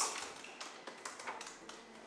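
Computer keyboard keys being typed: a quick, irregular run of soft keystroke clicks as a short shell command is entered.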